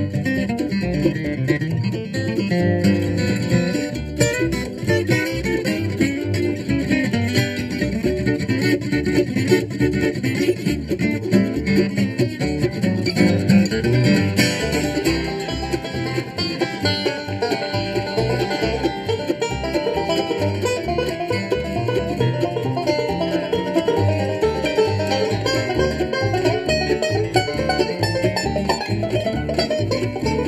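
Acoustic bluegrass string band playing an instrumental live, banjo and guitar picking quick runs over a walking bass line.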